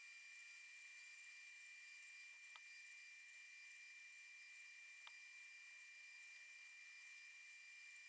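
DeWalt compact router on a CNC machine running a spoil-board flattening pass, heard as a faint, steady high-pitched whine with hiss and no low end. There are two faint ticks.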